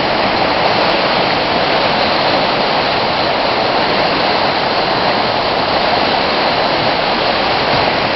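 A river rushing steadily, fast and turbulent with whitewater: 'one angry river'.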